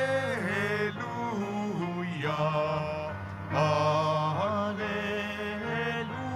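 Gospel acclamation sung slowly in held, drawn-out notes that slide from pitch to pitch, over sustained keyboard chords.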